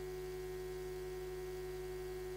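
Steady electrical hum on the audio line: one strong tone over a stack of fainter tones, unchanging in level and pitch.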